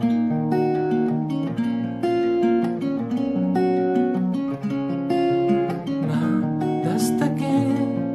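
Tanglewood TW4 E BS solid-mahogany electro-acoustic guitar, capoed, fingerpicked in one repeating arpeggio pattern, the thumb on the bass strings and the fingers on the upper strings, moving through an Am–Em–F–G chord progression. Each note is plucked separately and left ringing.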